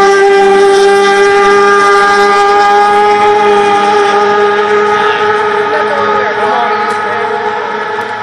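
Racing hydroplane's engine moving away after a pass: a loud, steady, high-pitched drone that fades gradually.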